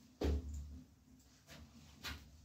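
Sticks of dry firewood knocking as they are shifted by hand in a grill's firebox: one sharp knock just after the start and a fainter one about a second and a half in.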